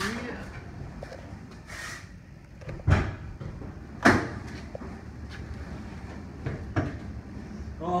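Two sharp metal clunks about a second apart, from the hood of a 1978 Chevy Nova being handled.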